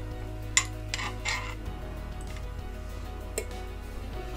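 A metal fork clicking against a glass jar and a glass bowl a few times as pickle slices are lifted out and dropped in, over soft background music.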